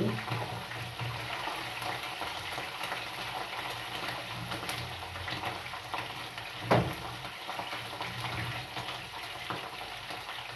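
Meat frying in oil in a frying pan, a steady sizzle with small pops. One louder knock about two-thirds of the way through.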